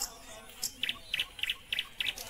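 A bird chirping: a run of short double chirps, about three a second, starting a little under a second in.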